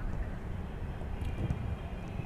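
Steady low outdoor rumble on the microphone, with a few faint taps of footballs being kicked in a passing drill.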